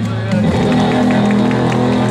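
Live rock band starting to play, suddenly louder: electric bass and electric guitar holding low sustained notes, with drum and cymbal hits.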